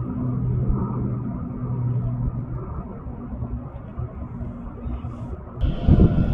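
A motor engine drones at one steady low pitch, fading gradually and dropping out about five seconds in, over a low rumble. A louder low rumble starts just before the end.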